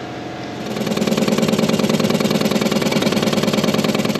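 A motor-driven machine starts up about half a second in and runs loudly and steadily with a rapid pulsing and a low hum.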